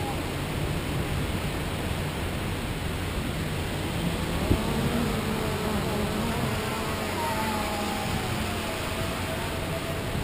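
Steady surf and wind noise, with the faint whine of a quadcopter drone's motors that shifts in pitch and sinks lower near the end.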